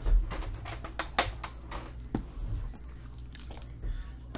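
A shrink-wrapped cardboard box of trading cards handled on a table: a soft thump at the start as it is set down, then a few sharp clicks and crinkles of fingers working at its plastic wrap.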